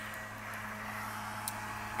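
A pause in the talk leaves a steady low-level hiss with a faint low hum, and a single small click about one and a half seconds in.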